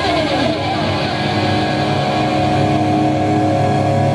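Live hard rock band playing at full volume with electric guitars, bass and drums. A note slides down in pitch at the start, then a chord is held ringing.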